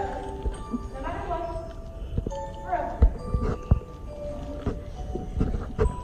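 Soft background music with a person's drawn-out, wavering vocal sounds in the first half, then several dull thumps, the loudest about three seconds in and another near the end.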